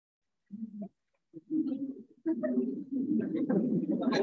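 A group of people laughing, starting softly about half a second in and swelling into steady laughter from about two seconds in.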